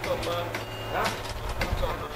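Short snatches of voices over a steady low engine-like hum, with a couple of faint clicks.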